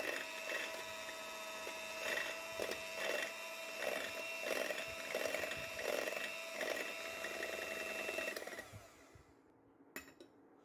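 Electric hand mixer running on low with its beaters whisking egg whites in a bowl, the sound swelling and fading about every half second. The motor winds down and stops about eight and a half seconds in, followed by a single click near the end.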